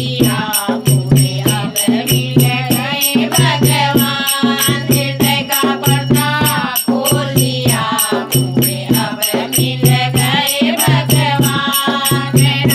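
A group of women singing a nirgun bhajan together, with a dholak drum keeping a steady beat and hand claps in a quick, even rhythm.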